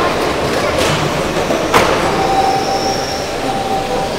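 Electric 1/12-scale GT12 radio-controlled racing cars running on a carpet track: a steady rush of motors and tyres, broken by a couple of sharp clacks about one and two seconds in. A thin, steady motor whine sets in about halfway.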